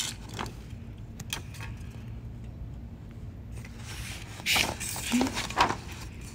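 Handling noises from a sheet of black paper being held and shifted: a few faint clicks, then two brief rustles about four and a half and five and a half seconds in, over a steady low hum.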